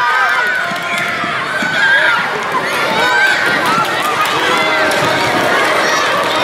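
Many children's voices shouting and cheering at once, high-pitched and overlapping, without a break.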